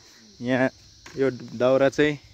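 A steady, high-pitched insect chorus drones throughout. Over it a person's voice says three short phrases; the voice is the loudest sound.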